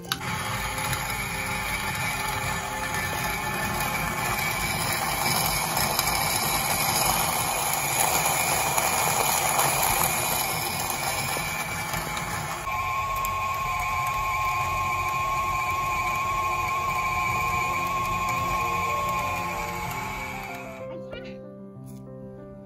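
A grain-mill attachment on a stand mixer grinds wheat berries into flour with a loud, steady motor-and-grinding noise. About two-thirds of the way through, it settles into a smoother whine with a clear high tone, and it stops shortly before the end.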